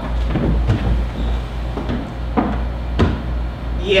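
A few knocks and scuffs of a wooden chair shifting on the stage floor, over a steady low hum.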